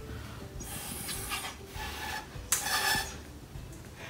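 Air blown through drinking straws, a breathy hiss in two puffs, the second shorter, pushing small cut-down cups across a tub of water in a straw race.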